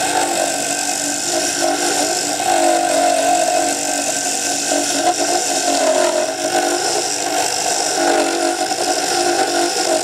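Wood lathe spinning a dart barrel while a hand-held turning tool cuts into the wood: a steady motor hum that wavers slightly in pitch, under a continuous hiss of wood being shaved.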